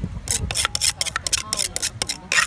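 A plastic spoon scraping around the inside of a papaya-salad mortar, scooping up the pounded salad: a quick, irregular run of short scrapes.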